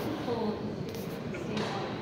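Ice hockey rink sound during play: indistinct voices of spectators, with two sharp knocks from the play on the ice, the second near the end.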